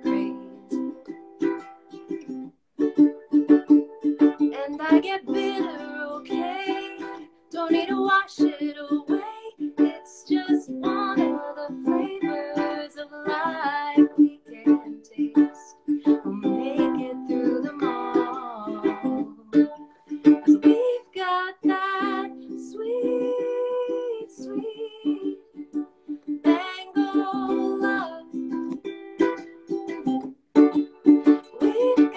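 A woman singing while strumming chords on a ukulele.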